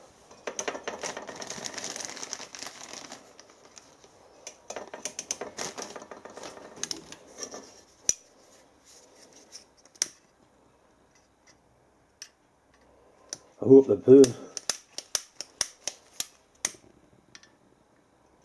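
Plastic bag crinkling in two spells as solid-fuel pellets are taken out, then a quick run of sharp clicks near the end from a utility lighter's igniter being worked to light the pellets.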